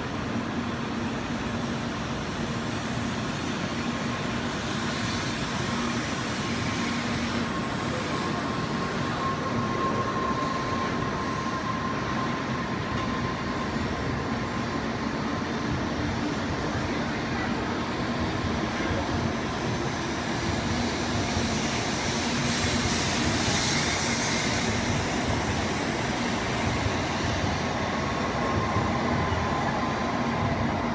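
N700A-series Shinkansen train pulling out of the station, its cars rolling past close by with a steady running noise and hum. It grows a little louder as the train gathers speed.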